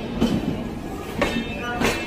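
Indian Railways passenger coaches rolling past with a steady rumble, the wheels giving a few sharp clacks over the rail joints.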